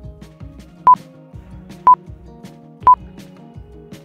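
iMovie's voiceover-recording countdown: three short beeps of one pitch, one second apart, signalling that recording is about to start.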